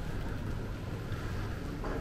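Low, steady rumble of background noise in a large airport terminal hall, with no distinct events.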